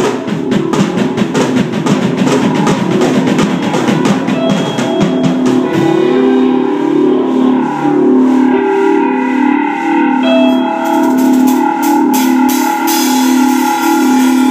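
Live rock band playing an instrumental passage on electric guitar, electric bass and drum kit. Rapid, busy drumming dominates the first half, then the guitar and bass settle into a repeating riff, with cymbals coming back in near the end.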